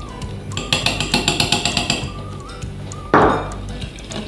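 A wire whisk beating an egg-yolk, sugar and cornstarch batter in a glass bowl, the wires clicking rapidly against the glass, about nine strokes a second for over a second. Soft background music plays underneath, and a short burst of noise comes about three seconds in.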